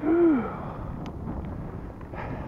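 A short hooting vocal sound from the rider, its pitch rising then falling, in the first half second, then steady wind noise on the microphone while he cycles.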